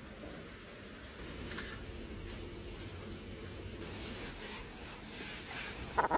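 Water spraying from a hose nozzle onto shrubs and soil: a faint, steady hiss.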